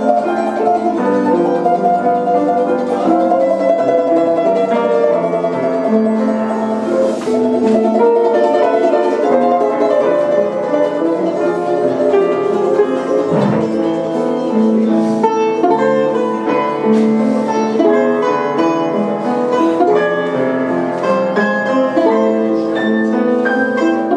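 A Russian balalaika and a piano playing a duo, the balalaika's plucked notes running quickly over the piano accompaniment.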